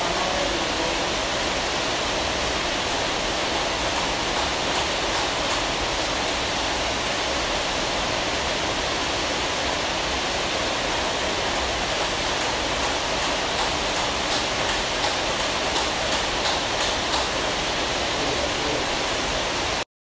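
A steady rushing noise throughout, with faint quick ticks of table tennis balls being hit in rallies, clearest in the second half.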